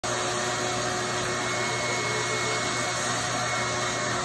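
Vacuum cleaner running steadily at a constant pitch.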